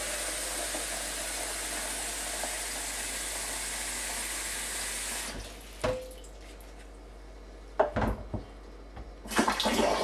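Cold water running from a kitchen tap into a homebrew barrel, a steady rush that stops about five seconds in. A few knocks and clunks follow, and running water starts again near the end.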